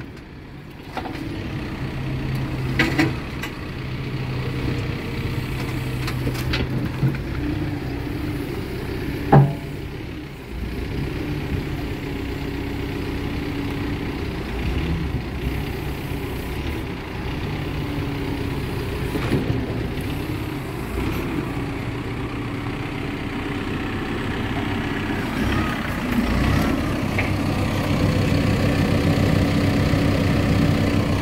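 Cat 430F2 backhoe loader's diesel engine running steadily while the backhoe arm and bucket are worked, its note shifting slightly as the hydraulics take load. Two sharp knocks stand out, about 3 and 9 seconds in.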